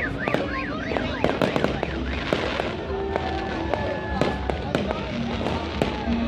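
Aerial fireworks bursting overhead: a dense, irregular run of sharp pops and crackles.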